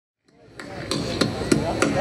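Hand claps in a steady beat, about three a second, fading in from silence a quarter second in.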